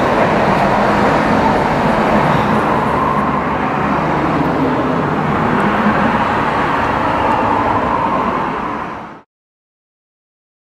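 Steady vehicle noise, like road traffic or a running engine, that fades out about nine seconds in.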